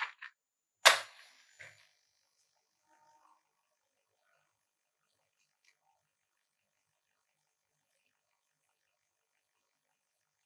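A match struck on a matchbox about a second in: one sharp scrape that flares into a short hiss as it catches and dies away within a second, after a small scratch at the very start.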